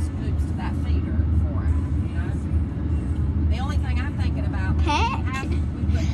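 Steady low rumble of road and engine noise inside a moving car's cabin, with faint voices talking about halfway through.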